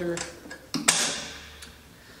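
A few light clicks and one sharper snap just before a second in, from the metal buckle latches on a Miller FiltAir 130 fume extractor's housing being worked by hand.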